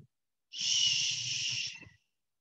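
A woman's voiceless, drawn-out 'shhh' shushing sound, starting about half a second in and lasting about a second and a half.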